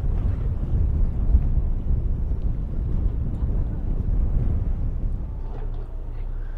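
Wind buffeting the microphone on the deck of a moving boat: a steady, fluttering low rumble, with the boat's engine and the water underneath.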